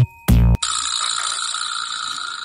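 Electronic background music ends on a last beat about half a second in. It is followed by a steady, high, hissing edit sound effect that lasts about two seconds.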